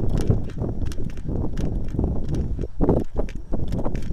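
Footsteps of a person jogging across grass, about two to three steps a second, over a steady low rumble on the microphone.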